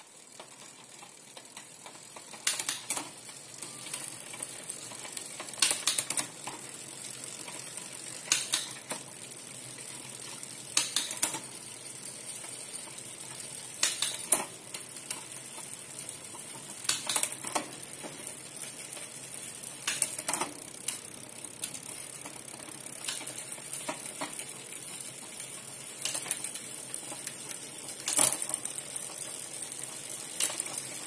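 Bicycle drivetrain spinning in place: the chain runs over an 11-34 cassette with a steady hiss, and a sharp click comes about every three seconds as the Microshift rear derailleur shifts the chain onto the next sprocket.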